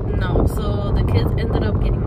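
Steady low rumble of a car driving, heard from inside the cabin, under a woman talking.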